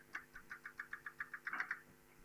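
Chalk tapping on a blackboard: a quick, even run of short taps, about eight a second, as a dotted curve is drawn. The taps stop a little before the end.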